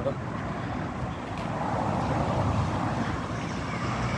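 A road vehicle passing by, its noise swelling for about a second and a half and then fading.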